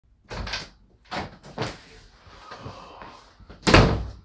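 A door opened and handled as someone comes into a small room: a few short knocks and rustles, the loudest near the end.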